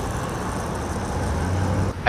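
Street traffic: cars driving past on a city road, a steady wash of traffic noise.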